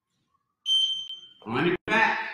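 A single high electronic beep, just under a second long, typical of a workout interval timer marking the end of a 30-second set. A man's voice follows right after it.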